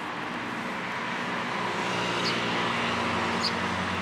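Road traffic: a motor vehicle's engine hum growing louder as it approaches during the second half. Two brief, faint bird chirps sound over it.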